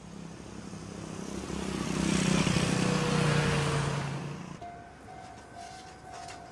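A motor vehicle drives past. Its engine sound swells to a peak about halfway through and then fades, the pitch dropping as it passes.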